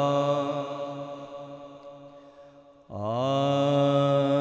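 A man's solo voice reciting a naat: one long drawn-out sung note that fades away over about three seconds, then a new held note starting sharply near the end.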